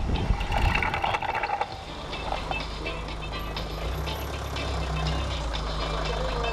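A short horn-like blast over the first second and a half, then a motor vehicle's engine idling steadily close by.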